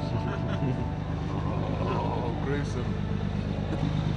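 Dive boat's engine running steadily with a low rumble, with faint voices over it.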